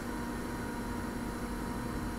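Steady hum with an even hiss from running bench equipment, unchanging throughout.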